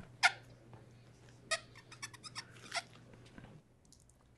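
Stifled laughter: a few short, breathy squeaks and wheezes, held back and dying out about three and a half seconds in.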